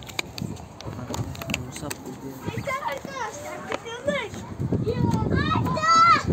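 Children's high voices calling out in bursts, with a few sharp knocks in the first couple of seconds.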